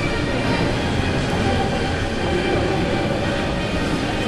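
Steady, even low rumble of background noise with no distinct events.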